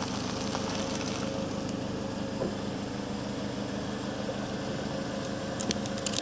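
A car engine running steadily at low speed as a tyre rolls slowly over balls of crumpled aluminium foil. A few faint crinkles and clicks come from the foil, the sharpest near the end.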